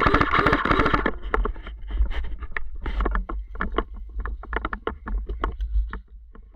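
A player's footsteps and body pushing through forest undergrowth, with twigs and brush crackling in irregular clicks. In the first second there is a dense, rapid rattle of crackling. Low rumble of gear and movement on the head-mounted microphone.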